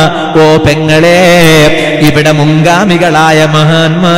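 A man's voice chanting in a wavering, melodic sing-song over a steady low hum.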